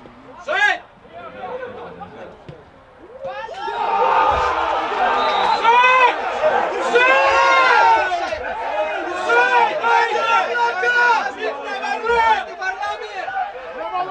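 Small crowd of football spectators shouting, with one sharp shout under a second in. About three and a half seconds in it breaks into loud, sustained mixed shouting and cheering, the reaction to a goal.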